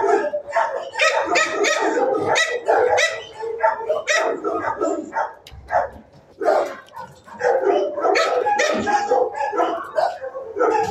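Many shelter dogs barking and yipping at once in a dense, overlapping din, with a brief lull about halfway through.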